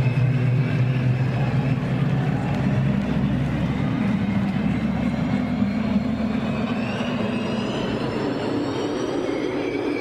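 Intro sound effects for a band's show: a dense, steady noise with held low drone tones that fade out about seven seconds in, and faint rising whines high up near the end.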